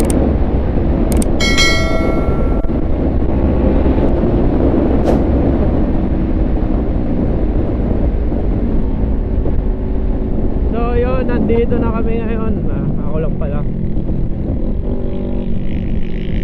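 Kawasaki Ninja 400's parallel-twin engine through an HGM performance exhaust, running steadily while the bike is ridden on the road, under heavy wind noise on the helmet microphone. A short ringing chime sounds about a second and a half in.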